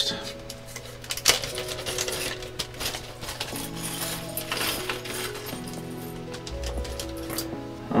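Small screw-in keyboard stabilizer parts clinking against each other inside a plastic bag as it is handled. Soft background music plays under the clinks.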